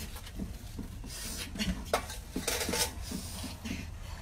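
Light clinks, knocks and rustles of small hard objects being handled, with one sharper click about two seconds in, over a steady low hum.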